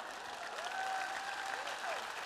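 Audience applauding steadily, with a faint held tone sounding through the clapping from about half a second in.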